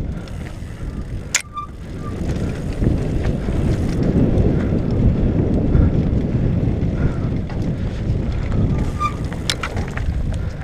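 Mountain bike descending a dirt trail at speed: wind buffeting a helmet-mounted camera's microphone over the tyres rolling and rattling on loose dirt, growing louder in the middle. There is a sharp click or knock about a second in and another near the end.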